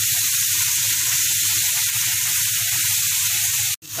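Diced pork belly and onions sizzling steadily in a hot frying pan; the sizzle cuts out for a moment just before the end.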